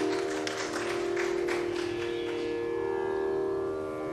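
Steady drone of a tanpura or shruti box sustaining the tonic. Over it, a few last hand-drum strokes die away in the first couple of seconds.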